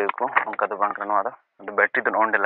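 Speech only: a person talking, with a short pause about one and a half seconds in.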